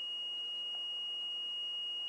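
Small electric buzzer, a piezo type, powered by a homemade five-cell lemon-juice battery, sounding one steady high-pitched tone with no let-up.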